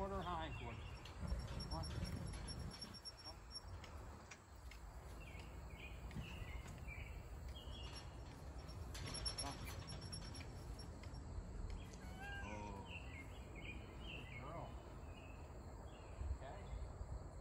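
Faint outdoor ambience: birds chirping on and off and a steady thin insect buzz over a low rumble, with a few brief faint murmured words.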